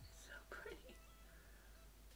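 Near silence: room tone with a steady low hum, and a brief faint whisper-like voice in the first second.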